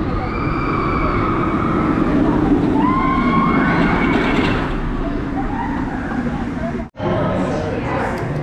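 Kraken, a B&M floorless roller coaster, with its train rushing through the track and making a loud, steady roar. Riders are screaming over it, the screams rising in pitch twice. The sound cuts off suddenly near the end.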